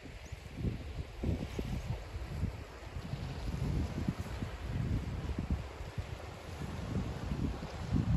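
Wind buffeting the microphone in irregular gusts, over a faint steady wash of the sea on a pebble shore.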